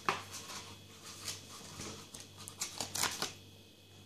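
Small cardboard boxes being handled and slid apart in the hands, with light rustling and a couple of sharper scrapes, near the start and about three seconds in.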